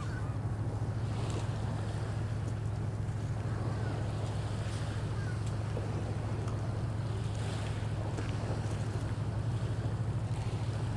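A boat engine idling: a steady low drone with a fast, even throb.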